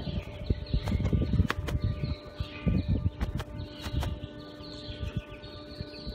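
Cloth cap being stretched and handled close to the microphone: irregular rustling and rumbling bumps with scattered clicks.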